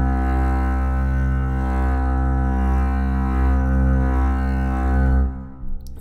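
A single long bowed double bass note from the Leonid Bass sampled instrument, held at a steady low pitch until it stops about five seconds in. With the dynamic range dial at zero, the tone shifts slightly while the volume stays level.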